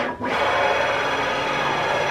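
CNC axis motor spinning a long ball screw at a high feed rate, a steady mechanical whine with several held tones. The screw is whipping at this speed.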